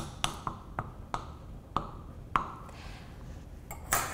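The end of a metal spoon docking a pie crust: a series of short, irregularly spaced taps as it pokes through the dough and strikes the pie pan beneath, coming less often toward the end.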